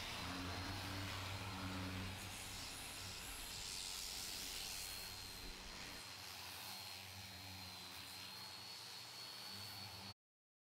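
Pneumatic random orbital sander with a 36-grit pad running fast on cured fiberglass fairing putty: a steady high whine over a hiss, with a low hum underneath that thins out about six seconds in.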